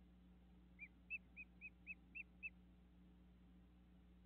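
A bird calling: a quick series of seven short, clear whistled notes, about four a second, faint over a low steady hum.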